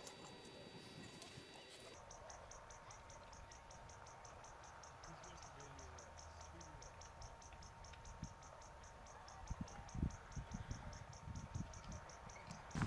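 Faint, steady high-pitched chirping, about four to five chirps a second, typical of a field insect such as a cricket, starting about two seconds in. A few low thumps break in near the end.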